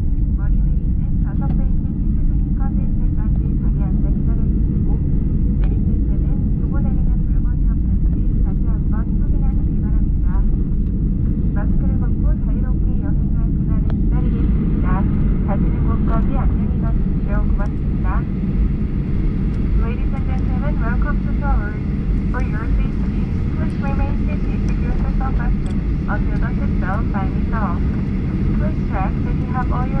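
Cabin noise of a Boeing 737 slowing after landing and taxiing: a steady low rumble from the idling jet engines and the rolling wheels. Voices run over it, and they grow clearer and louder about halfway through.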